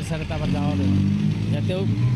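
A motor vehicle engine running steadily and low, under a man's voice.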